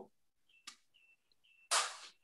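Mostly quiet pause in a video-call conversation, with a faint click about two-thirds of a second in and a short breathy hiss near the end, a person's breath just before speaking.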